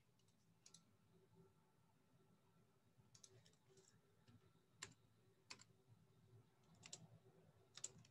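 Faint, scattered clicks of a computer keyboard and mouse, a few sharp clicks at a time with pauses between, over near-silent room tone.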